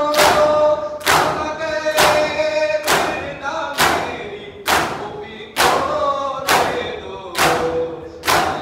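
Men's matam: a large group striking their chests with their hands in unison, a sharp slap a little more often than once a second, nine strikes in all. Under it the crowd chants a noha together.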